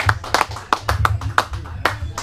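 A small audience clapping: a handful of people, with individual hand claps standing out in an irregular patter.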